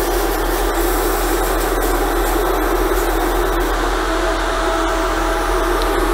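Steady hiss of compressed air from a hose-fed airbrush being worked, with a low steady hum underneath.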